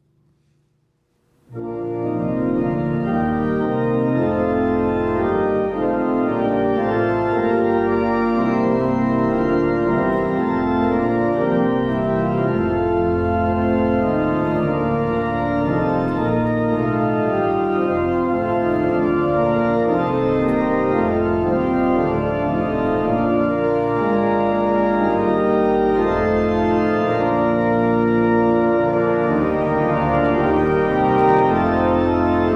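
Church organ playing a prelude in sustained, held chords over a moving line. It starts about a second and a half in, after a brief silence.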